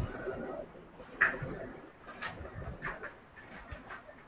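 Scattered short clicks and knocks, a few seconds apart, over faint room noise heard through a video-call connection, like objects being handled on a table.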